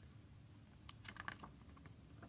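Faint rustling and a short cluster of soft clicks from handling a hardcover picture book as its page is turned, about a second in; otherwise near silence.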